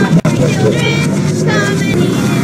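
A jumble of several soundtracks playing at once: effect-distorted logo jingles layered over a children's days-of-the-week song, with a very brief dropout just after the start.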